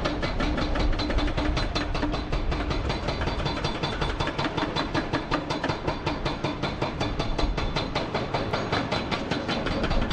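Hydraulic rock breaker on a Hyundai HX480L excavator hammering rock in rapid, steady blows, several a second, with the excavator's diesel engine running under load beneath it.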